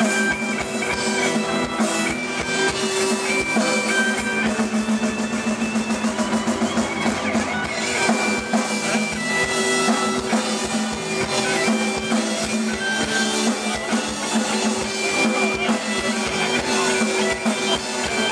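A live rock band playing: two electric guitars over a drum kit, loud and continuous.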